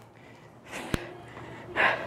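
A woman's hard, breathy exhales during an explosive single-leg squat-to-floor exercise, the strongest near the end, with one short thump about a second in as she sits down onto the rubber gym floor.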